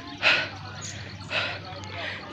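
A person breathing out audibly twice, about a second apart, close to the microphone, over a low steady background hiss.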